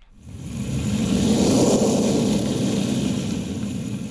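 Rumbling whoosh sound effect of a fiery meteor streaking across the sky. It swells in over about a second, holds steady, and begins to fade near the end.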